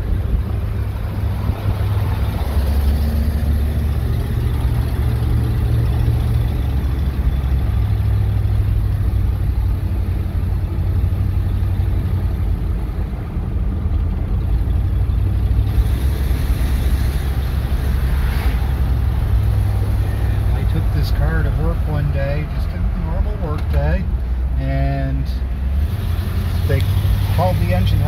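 Inside the cabin of a 1958 Edsel Citation under way: its 410 V8 engine and tyre and road noise as a steady low drone. A few brief voice-like sounds come over it near the end.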